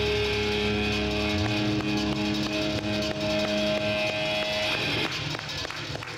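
Live rock band holding a sustained final chord on guitars over drum hits; the low bass drops out about a second in, the held notes stop shortly before the end, and the sound dies away in the last second.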